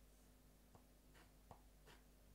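Near silence: room tone with a faint steady low hum and a few faint soft ticks.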